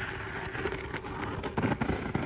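Scissors cutting through a plastic poly mailer, with the thin plastic crinkling under the hand: a run of short snips and rustles, busier in the second half.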